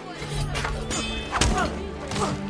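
Film score music with sustained low notes, cut by two sharp hits, about half a second in and, louder, about a second and a half in.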